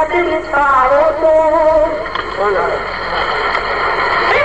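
A man's voice chanting a Sindhi naat, a devotional poem, into a microphone in long held melodic notes that bend into wavering ornamented turns.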